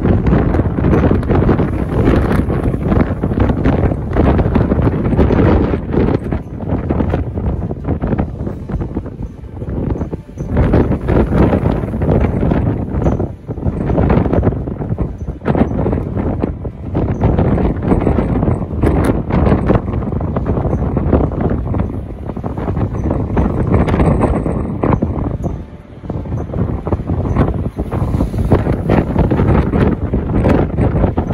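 Gale-force wind buffeting the phone's microphone in loud, gusting rumbles, easing briefly about ten seconds in and again near twenty-six seconds.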